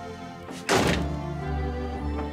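A front door shutting with one heavy thunk about two-thirds of a second in, over soft background music.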